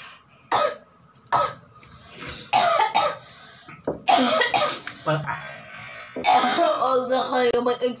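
People coughing and clearing their throats from the burn of hot chili peppers: several short sharp coughs in the first half, then voiced exclamations and laughter.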